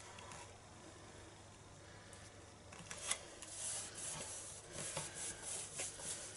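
Paper handling: patterned cardstock being slid into place and pressed flat by hand, giving faint rustling and rubbing that grows busier about halfway through, with a few light taps.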